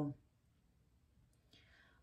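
A woman's voice trails off at the end of a phrase, then near silence for about a second, then a faint breath drawn in just before she speaks again.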